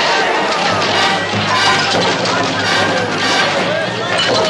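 Film score playing under a crowd of many voices shouting at once.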